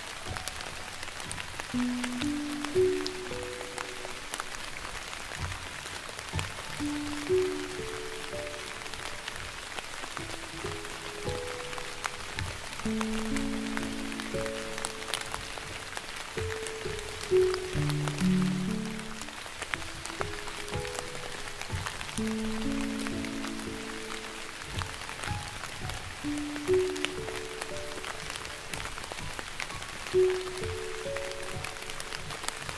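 Slow, gentle piano melody with notes held a second or two, over a steady wash of light rain with scattered drop ticks.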